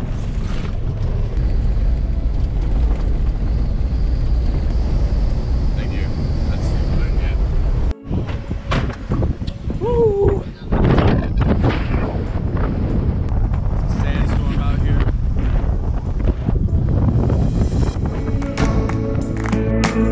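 A car rumbles along, heard from inside the cabin. After a sudden cut, strong wind buffets the microphone, with a few brief voices. Music fades in near the end.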